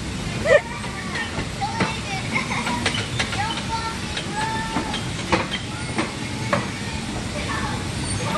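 Electric bumper cars running on a ride floor: a steady hiss and whir with scattered sharp clicks and knocks, and children's voices faintly in the background.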